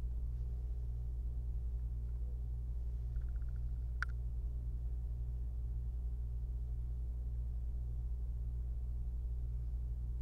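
Quiet room tone under a steady low electrical hum. A brief run of rapid faint ticks comes a little after three seconds in, and a single sharp click about a second later.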